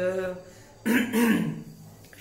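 A man's unaccompanied sung note trails off. About a second in he gives a short throat-clear before the next line.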